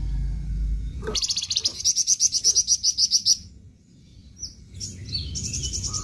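A flamboyan songbird singing a fast run of about a dozen sharp, evenly repeated high notes, about seven a second. After a short pause and a few single notes, a second rapid run begins near the end.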